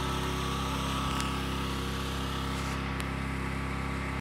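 Gasoline generator engine running steadily, a constant hum, supplying backup power during a mains outage.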